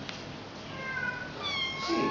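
Kittens mewing: high, thin mews, a first one about two-thirds of a second in and a louder one near the end.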